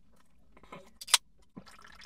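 Drinking from an aluminium can: a short, sharp sound a little past one second in, then smaller sips and swallows near the end.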